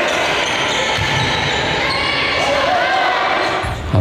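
Live game sound of a women's basketball game in a large indoor gym: the ball bouncing, and players and spectators calling out, echoing around the hall.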